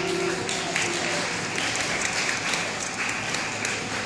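Audience applauding. The last held notes of the dance's accompaniment music die away in the first second.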